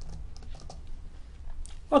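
Computer keyboard being typed on: a quick, irregular run of key clicks.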